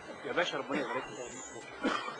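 A few short, indistinct vocal utterances: one cluster about half a second in and a brief one near the end.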